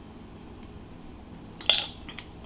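Metal kitchen tongs knocking once against the dish, a single sharp clink near the end, as sautéed pepper and onion strips are pushed out of a glass bowl into a skillet. Otherwise only quiet room tone with a faint steady hum.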